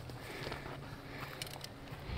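Arrows being pulled out of a foam 3D archery target: faint handling noise, with a few short clicks about a second and a half in.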